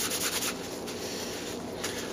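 Disposable-gloved hands rubbing a steel clock chain slick with Boeshield T9, in rapid strokes. About half a second in this gives way to a steadier rustle as a paper towel is taken up to wipe the chain off.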